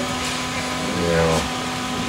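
Indistinct voices of people talking, with a brief stretch of speech about a second in, over a steady background hum.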